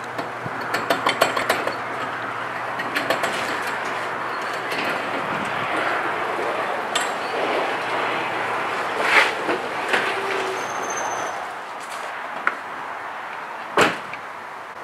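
Electric garage door opener raising a paneled sectional door: a steady motor hum with rattling and clinking from the door's rollers and track. The hum stops about eleven seconds in as the door reaches the top, and a single sharp click follows near the end.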